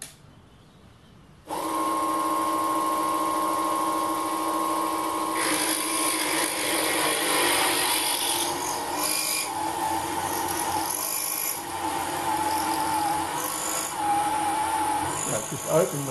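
A 775 DC motor driving a belt-drive drilling spindle, run off 19 volts, starts about a second and a half in with a steady whine. From about five seconds in, a 4.3 mm high-speed steel drill cuts into steel, adding a rough grinding scrape over the motor's note.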